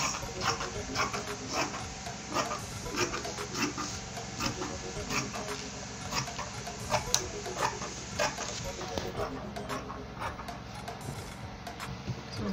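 Scissors snipping through Ankara cotton print fabric, trimming the excess from around a cardboard circle, in irregular short cuts about one to two a second.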